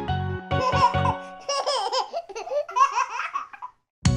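A baby giggling and laughing in several short bursts, while the last notes of a children's song die away in the first second or so.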